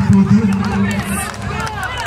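A man's voice over a loudspeaker in a long drawn-out call, over a crowd shouting.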